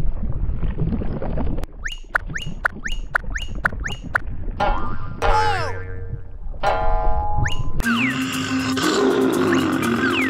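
Cartoon sound effects over a music score. A run of about six quick rising swoops comes two a second, then a falling, whistle-like glide. A fuller music cue with a held low note comes in near the end.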